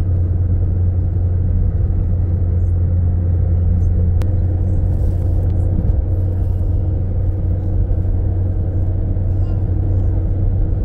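Car engine and tyre noise heard inside the cabin while driving at a steady speed: an even, steady low rumble.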